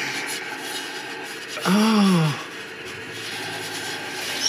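Leather work gloves rubbing and scraping against a pit-fired ceramic bowl as it is turned in the hands. About halfway through, a man makes one drawn-out vocal sound that rises and then falls in pitch.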